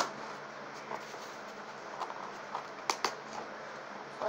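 Cardboard box being worked open by hand: a few faint scrapes and short sharp clicks against a steady background hiss, the strongest pair about three seconds in.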